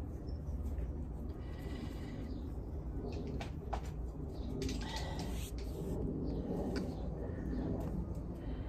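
Hands rolling and pressing a ball of damp clay soil, soft rubbing with a few faint ticks, over a steady low rumble.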